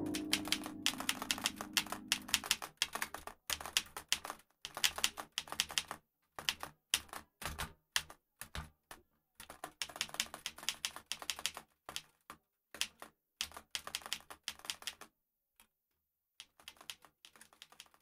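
Typing: quick irregular runs of key clicks that thin out and stop about fifteen seconds in. A low held music note fades out under the first couple of seconds.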